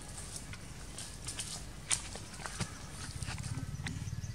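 Outdoor ambience: a steady low rumble that grows louder near the end, with scattered short clicks and scratches, the sharpest about two seconds in.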